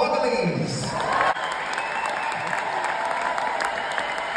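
A large theatre audience applauding steadily as the speakers walk on stage. The tail of the walk-on music fades out in the first half second.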